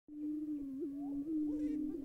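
Prairie chickens booming: a steady low hooting drone, made with the birds' air sacs, with short rising-and-falling calls over it.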